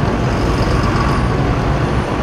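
Steady, loud running of heavy diesel engines from road-repair machinery and passing traffic, with a deep low rumble under an even noise.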